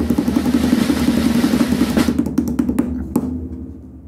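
A drum roll: rapid, continuous drumming that tails off over the last second.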